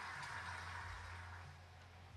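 Faint, quiet hall ambience with a steady low hum, slowly growing quieter, while a player settles over a shot; no ball strike.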